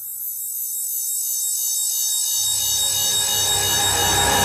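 Build-up in a darkstep drum and bass track: a wash of high synth tones swells steadily louder, and a low bass comes in a little over halfway through.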